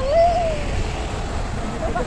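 Double-decker bus driving past close by, a low engine and road rumble, with a voice heard briefly about the first second.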